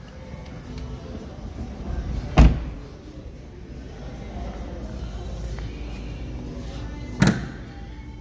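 A car door shutting with a solid thud about two seconds in, then a second sharp clunk near the end as the hood is unlatched and lifted on a 2022 BMW M850i Gran Coupe.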